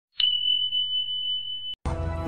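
A single steady, high-pitched electronic beep tone, held for about a second and a half over a faint low hum, starting and stopping with a click. Just before the end, music starts.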